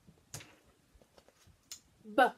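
Near silence with a few faint clicks and taps as flashcards are handled and swapped by hand, the clearest about a third of a second in and another near the end.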